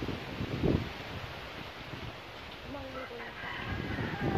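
A rooster crowing in the background, a pitched call about three seconds in, over outdoor background noise. A short low thump comes under a second in.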